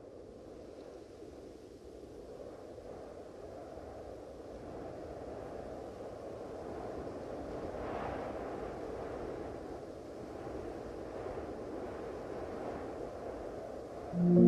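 A faint, steady low rumbling noise that swells slowly, with a brief brighter rise about eight seconds in.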